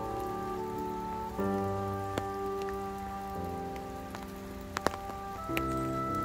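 Slow background music of sustained chords over steady rain falling, with scattered sharper drop sounds and a pair of loud drips about five seconds in.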